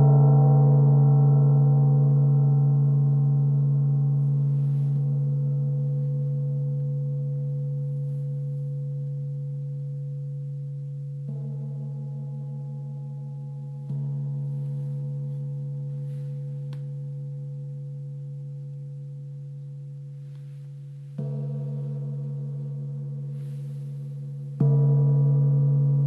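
Gong ringing with a low, steady pitched tone that slowly fades, struck again about four times with no sharp attack, each strike bringing the ring back up.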